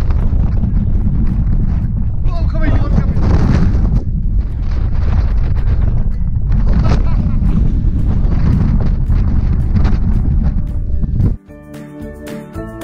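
Strong gusting wind buffeting the camera microphone in a loud, steady low rumble, with faint voices under it. Near the end the wind cuts off suddenly and music begins.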